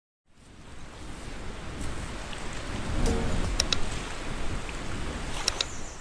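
Surf-like rushing water noise fading in over the first few seconds, then running steadily, with a few brief high-pitched chirps about halfway and near the end.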